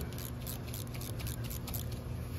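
Ratchet with a 10 mm socket clicking as it loosens a high-pressure fuel pump mounting bolt: a quick run of light clicks, several a second, over a steady low hum.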